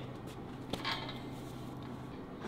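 Steel pull-up bar clinking once in its rig, about three quarters of a second in, as a body jumps up and over it, with a short hiss just after.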